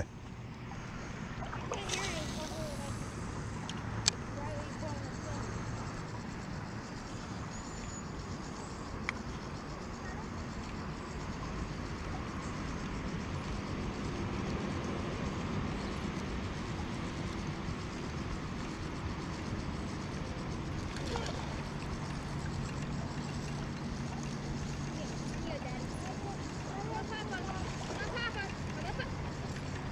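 Steady rushing noise of a flowing river, with faint voices a few times and a sharp click about four seconds in.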